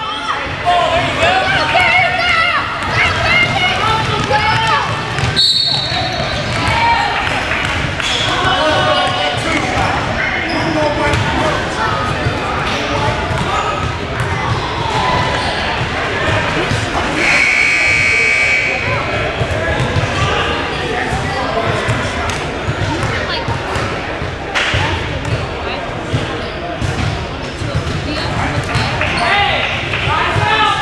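Youth basketball game in a gymnasium: a basketball bouncing on the hardwood court amid voices of players and spectators, echoing in the large hall. A short high tone sounds about five seconds in and a longer steady high tone around seventeen seconds, as play stops for a free throw.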